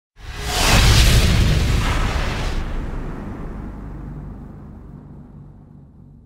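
Cinematic intro sound effect: a sudden deep boom with a bright whooshing shimmer that dies out within about two and a half seconds, then a low rumble fading away slowly.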